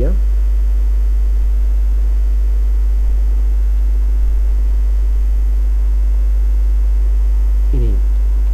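Steady, loud low electrical hum, of the mains-hum kind, unbroken for the whole stretch with nothing else over it.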